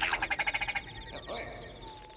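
An otherworldly jungle creature sound effect: a fast rattling trill lasting under a second, then a short higher chirp, over steady insect chirring.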